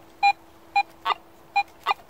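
Garrett AT Pro metal detector beeping over a buried target: five short beeps, two of them a little higher in pitch, over a faint steady tone. The display reads non-ferrous target IDs of 83 and 53.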